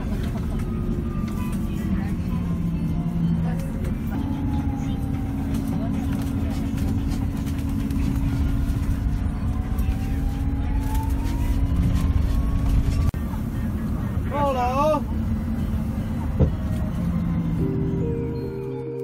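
Inside a moving city bus: steady low rumble of the drivetrain and road noise, with faint whining tones that slowly rise and fall. About fourteen and a half seconds in, a short warbling tone sounds briefly.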